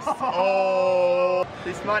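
A man's voice holding one long, steady note for about a second, a drawn-out vocal reaction, followed by the start of speech near the end.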